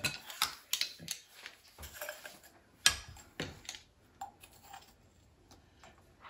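A spoon stirring dry flour and spices in a glass mixing bowl: irregular light clicks and scrapes against the glass, with a sharper knock about three seconds in, then fainter scattered ticks.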